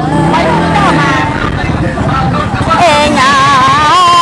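A singer performing a Mường folk song (hát Mường), holding long notes that waver and bend in pitch, over a steady low rumble.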